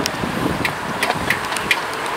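Wind rushing over the microphone of a moving bicycle, with four or five short clicks scattered through the middle.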